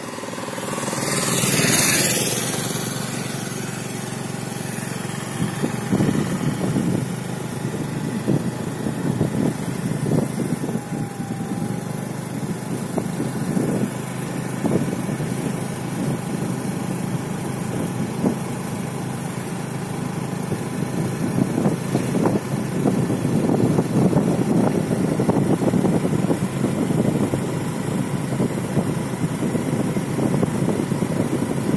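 Engine and road noise of a vehicle driving along, with wind gusting on the microphone. About two seconds in, an oncoming auto-rickshaw passes close by with a brief rush of sound.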